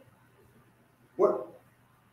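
A single short voiced exclamation from a person, like a quick "hah", about a second in, in an otherwise quiet hall.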